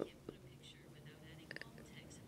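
Near silence between spoken phrases, with a faint, indistinct voice in the background.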